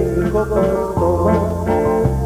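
Live grupero band music with a steady bass line and a man singing.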